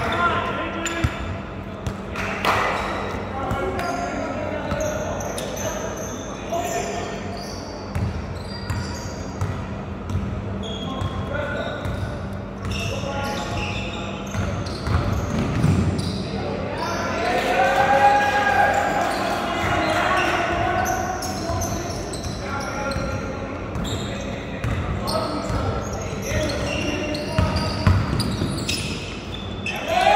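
Basketball game in an echoing gymnasium: a ball bouncing on the hardwood floor and sharp knocks, under indistinct voices of players and spectators. A faint steady low hum sits underneath.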